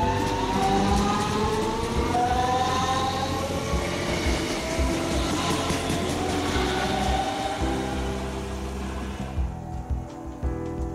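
DB Class 425 electric multiple unit accelerating away, its traction converters whining in a series of slowly rising tones, with background music underneath.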